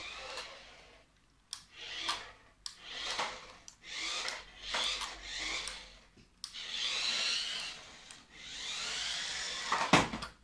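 A toy remote-control car's small electric motor whines in about seven short bursts, its pitch rising and falling as the car speeds up and stops again and again. There is a sharp knock near the end.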